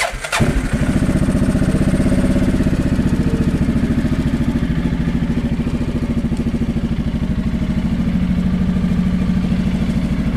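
Arctic Cat 700 EFI ATV's Suzuki-built single-cylinder engine starting right at the beginning, catching at once and settling into a steady, evenly pulsing idle.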